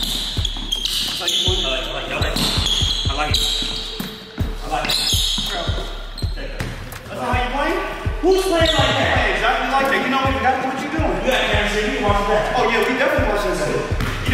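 Basketball dribbled on a hardwood gym floor: a run of repeated bounces, with a voice over them in the second half.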